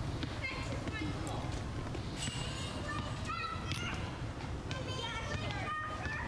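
Outdoor park ambience: a steady low rumble with faint distant voices of people talking, coming and going a few times.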